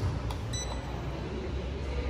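Lift hall call button on a Schindler 5500 pressed: a light click, then one short electronic beep about half a second in as the up call registers, over a steady low rumble.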